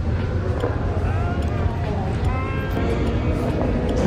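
Steady low rumble of room noise with faint, indistinct voices of other people in the background.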